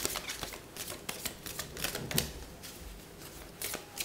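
Tarot cards being shuffled and handled: an irregular run of crisp flicks and clicks of card stock.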